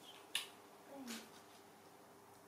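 A single sharp click about a third of a second in, then a short soft rustle about a second in, over quiet room tone.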